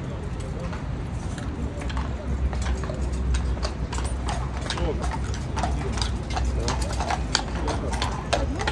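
Horses' shod hooves clip-clopping on a paved road, the hoofbeats coming thicker from a few seconds in, over the chatter of a crowd.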